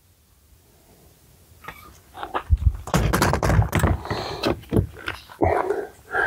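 Quiet for the first couple of seconds, then a run of knocks, clicks and clatter from flashlights being handled and swapped.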